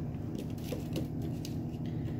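Light taps and clicks of cut potato pieces being picked up and set down on a metal sheet pan, several small knocks spread across the two seconds over a steady low hum.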